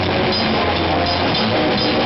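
A heavy metal band playing live at full volume, heard close to the drum kit: fast drumming with repeated cymbal crashes inside a dense, distorted wall of band sound that never lets up.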